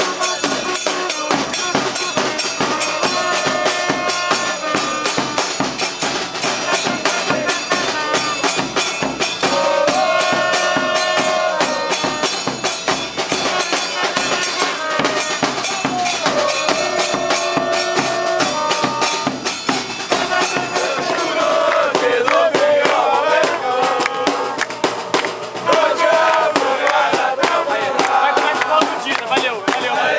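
Football supporters' band playing: trumpets carry a melody in repeated phrases over a dense, fast beat of bass drums and smaller drums. From about two-thirds of the way through, a crowd of fans sings a chant over the drums in place of the trumpets.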